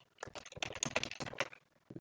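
Computer keyboard typing: a quick run of keystrokes as a word is typed, stopping about half a second before the end.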